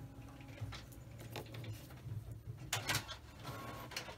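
Faint clicks and taps of small plastic parts being handled while a plastic spring clamp is worked onto a freshly cemented plastic model-kit assembly, with a cluster of clicks a little under three seconds in, over a low steady hum.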